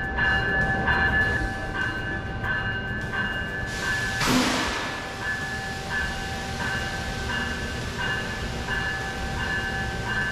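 A commuter train's bell ringing steadily at a station platform, about one and a half dings a second. A short burst of hissing comes about four seconds in.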